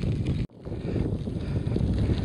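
Wind buffeting the microphone while riding a bicycle: a steady low rumbling noise, broken by a sudden brief dropout about half a second in.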